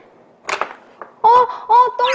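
A click about half a second in, then two short, loud, honk-like comic sound effects, one right after the other.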